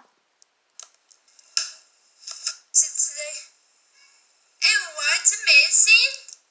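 A voice speaking in two short stretches, thin and without bass as if played through a small device speaker, with a few faint clicks in between.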